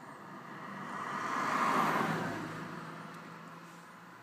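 A car passing by outside, heard from inside a parked car: it swells to a peak about halfway through, then fades away.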